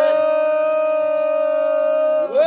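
A singer holding one long, steady note, settling onto it after a short upward slide at the start.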